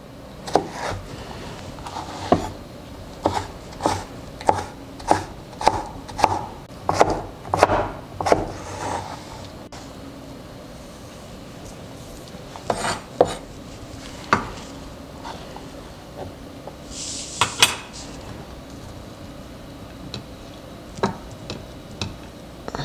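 Chef's knife dicing courgette on a wooden cutting board: a run of sharp chops, about one and a half a second, for the first nine seconds, then a few scattered chops. A little past the middle, a short scrape of the blade pushing the diced pieces along the board.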